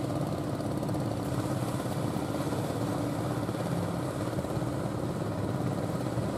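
Fishing boat engine running with a steady, unchanging hum.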